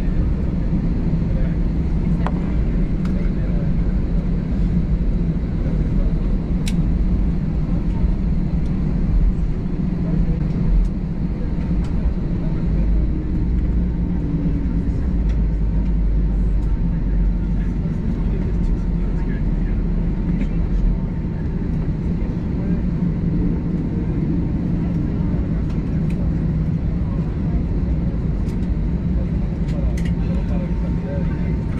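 Cabin noise of an Airbus A320-214 taxiing after landing: its CFM56 engines run steadily at idle thrust, heard from a window seat over the wing as a constant low rumble and hum. A faint steady whine joins about halfway through.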